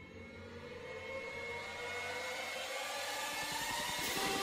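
A sound-effect riser: several tones gliding slowly upward over a swelling hiss, growing steadily louder.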